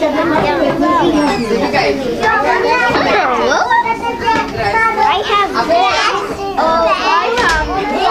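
A roomful of young children talking and calling out at once, many high voices overlapping.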